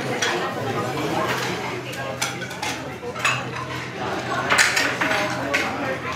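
Restaurant clatter: plates and cutlery clink a few times, about two, three and four and a half seconds in, over the murmur of other people talking.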